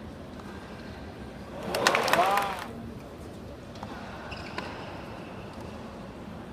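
Low background of a tennis stadium crowd during play. About two seconds in comes a brief loud burst of a few sharp clicks and a short voice call that rises and falls in pitch, with a couple of faint clicks later.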